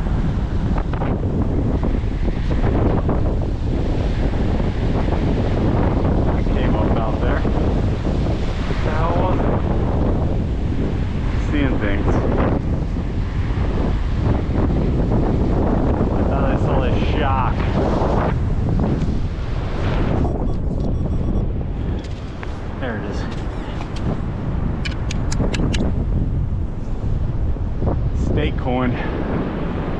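Strong wind buffeting the microphone as a heavy, continuous low rumble, with surf washing behind it and brief voice-like fragments now and then.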